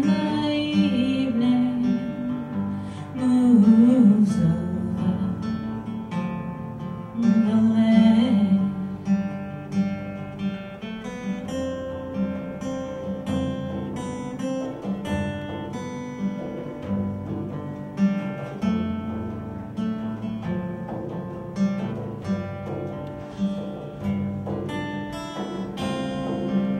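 Acoustic guitar strummed and picked in a folk instrumental passage. A woman's wordless vocal line rises in the first half. Short sharp taps, which fit the frame drum she holds, come in later.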